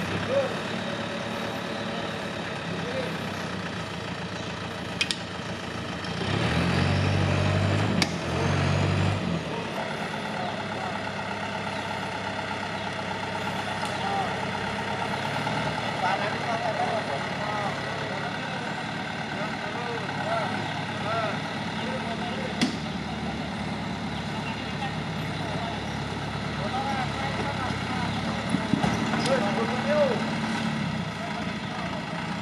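Off-road 4x4's engine running at low revs as the vehicle crawls up a steep muddy slope, revved up hard for about three seconds some six seconds in, then settling back. A few sharp clicks stand out over it.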